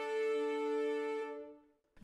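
Sampled solo French horn and three-player muted cello section (Spitfire Studio Brass Horn Solo 1 with Studio Strings Professional Celli 3A) holding a sustained chord, which fades out about a second and a half in.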